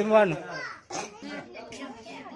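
Children's voices: one child's loud drawn-out call runs over the first moment, then low chatter from the group.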